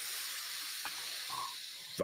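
Steady hiss of microphone and recording background noise, with a faint click a little before halfway.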